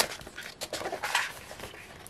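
Paper pages of a book rustling as they are handled and pulled at, with a few brief soft crackles.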